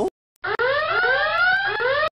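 Electronic alarm sound effect from a cartoon wrist gadget: a run of overlapping rising tones that starts about half a second in, after a short silence, and cuts off abruptly at the end.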